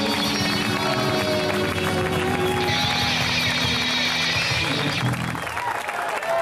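Live electric blues band (electric guitars, keyboard, bass and drums) holding the closing chord of a song, with a bright cymbal-like wash over the last couple of seconds; the music cuts off about five seconds in and the audience starts applauding and cheering.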